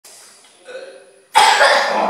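Faint voice sounds, then a sudden loud vocal outburst from young people about a second and a half in.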